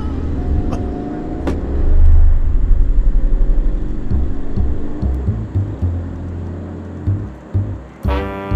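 Deep rumble of a motor vehicle, swelling and pulsing about two to three seconds in.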